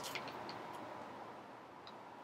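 Quiet room tone with a few faint, soft ticks.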